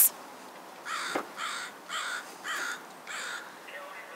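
A bird calling five times in a row, harsh evenly spaced calls about half a second apart, with a short click just after the first.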